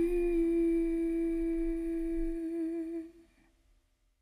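A singer's voice humming one long held note to close a song. The note wavers slightly near the end and fades out a little after three seconds in.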